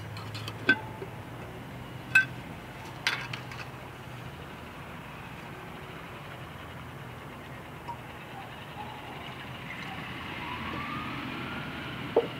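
A glass jar and its lid clinking three times in the first few seconds as the jar is opened and a liquid concentrate is poured in. After that there is only a steady low background hum, with a faint passing vehicle near the end.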